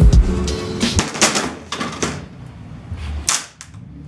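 Background music ends about a second in, followed by a few separate sharp metallic clicks and knocks from hand tools working on a seat's metal bracket and rails.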